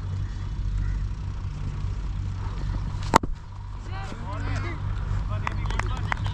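One sharp knock of a leather cricket ball striking something about three seconds in, over a steady low rumble; faint distant voices follow.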